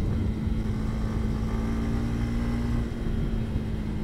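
Sport motorcycle riding at a steady pace, its engine holding one even note over a low road and wind rumble, picked up by a helmet-mounted lavalier microphone.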